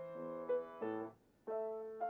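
Grand piano played solo: notes and chords struck and held, breaking off into a brief silence just after a second in before a new chord sounds.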